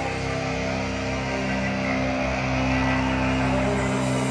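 Live rock band music in an instrumental passage: chords held and ringing steadily, with no singing and no clear drum hits.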